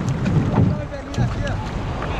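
Wind rumbling on the microphone and water sloshing against an outrigger canoe's hull in shallow water at the shoreline.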